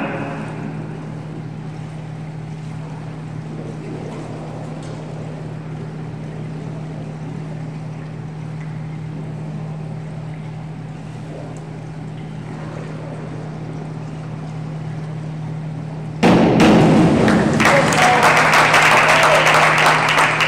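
A steady low hum with quiet pool-hall room noise, then, about three-quarters of the way through, sudden loud applause and cheering from spectators as a dive is completed.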